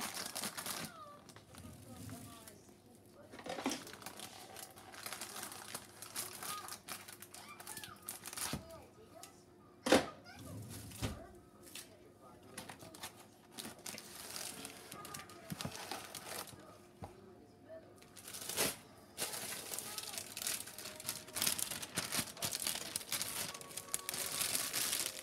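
Plastic bag of cake mix crinkling as it is handled and poured into a plastic mixing bowl. There is a sharp knock about ten seconds in and another near nineteen seconds.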